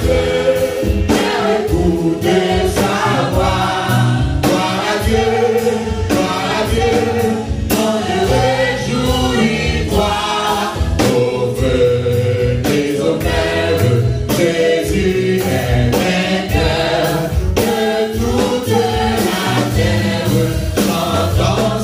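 Live gospel worship music: a choir of singers with a man leading, backed by a drum kit keeping a steady beat.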